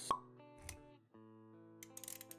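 Intro music with sound effects: a sharp pop right at the start, a brief low thud a little later, then sustained musical notes.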